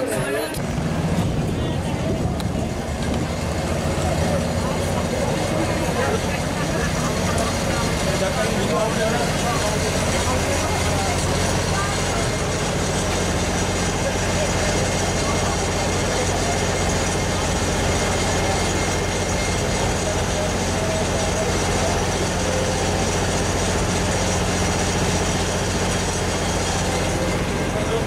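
A large engine running steadily at idle, with people talking over it.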